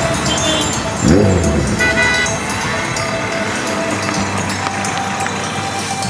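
Road traffic noise from a busy street, mixed with background music, with a short swooping tone about a second in.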